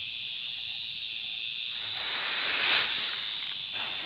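A steady high-pitched hiss, with louder rustling noise swelling up about two seconds in and fading again, and a second swell starting near the end.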